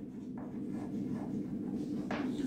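Chalk scratching on a chalkboard as a word is handwritten, a faint run of short uneven strokes.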